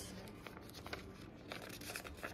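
Faint rustling and crinkling of a sheet of paper being folded by hand, with a few light crackles.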